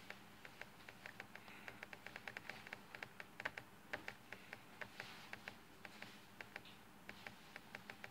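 Quick, irregular clicking on a laptop, several clicks a second, as photos are flipped through on screen.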